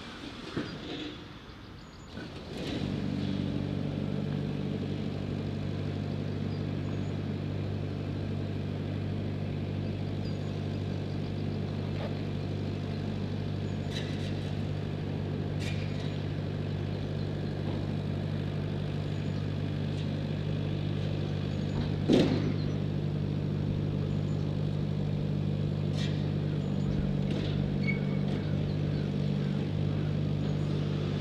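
An engine idling, a steady low hum that comes in about two and a half seconds in and holds evenly, with a few short sharp clicks over it, the loudest about twenty-two seconds in.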